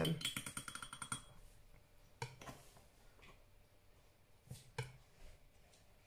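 A paintbrush swirled in a glass jar of rinse water, its handle clicking fast against the glass for about a second. A few faint single taps follow.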